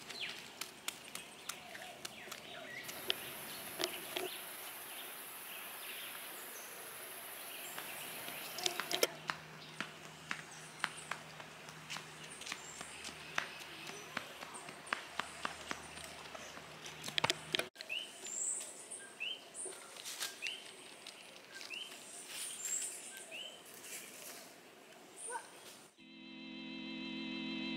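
Footsteps crunching and crackling on dry fallen bamboo leaves, with a steady high hiss for a few seconds. About two-thirds of the way through, the crunching stops and short rising chirps repeat about once a second against outdoor ambience.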